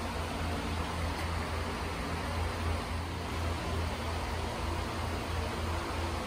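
Steady low hum with an even hiss: background noise of a large store, like ventilation fans running.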